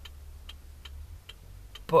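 Hazard warning lights of an Iveco lorry ticking in the cab, an even two to three ticks a second, over the low steady hum of the idling engine.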